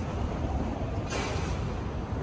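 Steady low rumble of street traffic with a tram approaching along the street; a broader hiss comes in about a second in.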